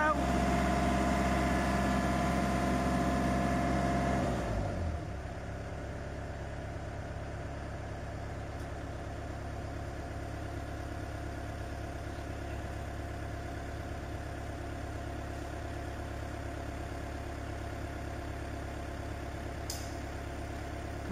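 The diesel engine of a 7.5-tonne crane running at raised revs while lifting, dropping to a steady idle about four and a half seconds in.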